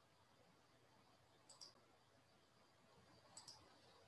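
Near silence with a few faint, sharp clicks: a pair about a second and a half in and another pair near the end.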